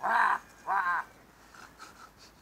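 Chickens squawking: two harsh squawks, one right at the start and a second just before the one-second mark, as a hen is grabbed at through the fence.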